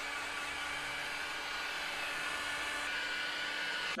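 Electric heat gun running, its fan blowing hot air in a steady, even rush with a faint steady hum underneath, used to heat crackle-effect spray paint so it cracks.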